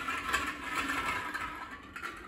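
Numbered plastic draw balls being stirred by hand in a glass bowl, rattling steadily against each other and the glass.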